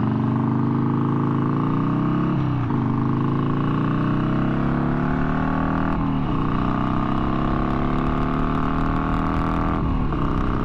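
1991 Harley-Davidson FXLR's V-twin engine accelerating through the gears. Its pitch climbs steadily, then drops at upshifts about two and a half seconds in, about six seconds in, and at the end.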